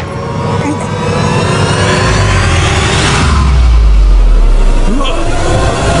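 Loud film sound design: sweeping tones rising in pitch over a deep rumble that swells from about two seconds in and fades near the end.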